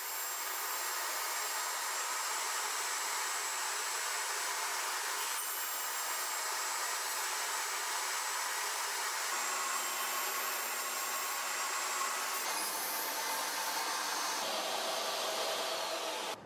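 Table saw running, with the blade spinning in a wooden crosscut sled. The motor finishes coming up to speed in the first second, then runs steadily.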